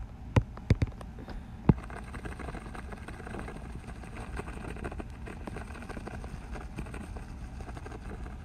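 Five sharp clicks within the first two seconds, as of a new colour being picked on a drawing device, then a steady low background rumble.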